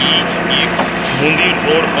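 Speech: voices talking over steady background noise with a low, steady hum.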